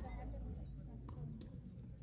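Light knocks of a tennis rally on a grass court, from racket strikes on the ball, the ball landing and quick footsteps, several in two seconds, under people talking in the background.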